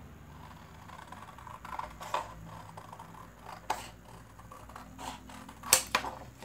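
Scissors cutting through a sheet of paper, a few separate snips with the loudest near the end.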